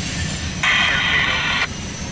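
Freight train rolling past with a steady low rumble of cars on the rails. About half a second in, a hissing burst cuts in sharply, lasts about a second, and stops just as suddenly.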